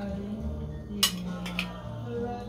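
A metal utensil clinks sharply against a cooking pot once about a second in, followed by a lighter click, over soft background music.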